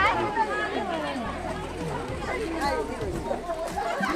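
Several people talking at once: overlapping conversational chatter with no single voice standing out.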